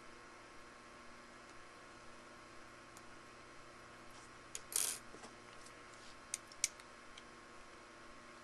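Small handling sounds of metal hand tools on a paper-towel-covered bench: a click and a brief scrape a little past the middle, then two sharp light clicks as a digital caliper is brought to a small metal cap. A faint steady hum runs underneath.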